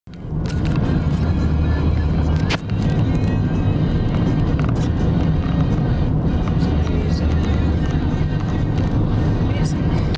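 Music with vocals playing inside a moving car, over the steady low rumble of the engine and tyres on the road.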